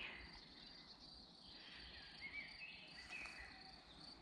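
Near silence outdoors in a meadow: a faint, steady high-pitched insect trill, with a few faint chirps about two to three seconds in.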